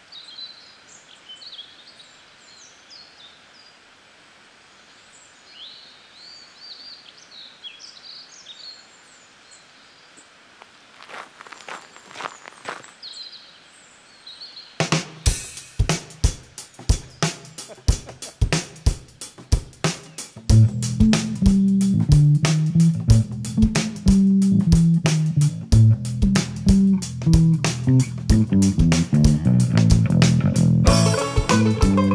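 Birds chirping over quiet outdoor ambience, with a few light clicks about two thirds of the way through the quiet part. About halfway in, a drum kit starts a steady beat with hi-hat, and about five seconds later a bass guitar joins as the band's song gets under way.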